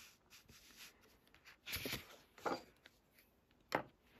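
Paper being handled on a tabletop: a few brief rustles as a drawing tile and a scrap sheet are slid and moved, then a sharp tap near the end.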